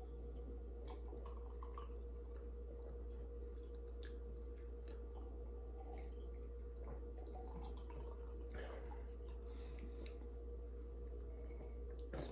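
Quiet drinking from glasses: faint sips, swallows and small scattered clicks over a steady low hum.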